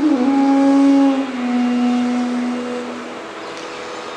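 Bamboo bansuri flute playing a slow passage of Raag Bhupali: a low note slides down a little and is held for about three seconds, fading away toward the end.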